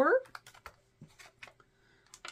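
A few light, scattered clicks and taps as hands handle a ring binder's pages and metal rings and pick up a die on a wooden tabletop.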